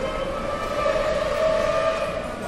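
A steady, high whine of several held tones over a rumbling noise, growing a little louder about a second in.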